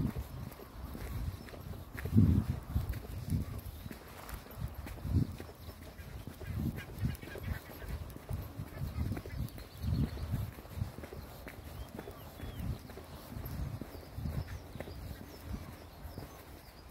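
Footsteps on a dirt path: irregular low thumps, roughly one every half second to a second.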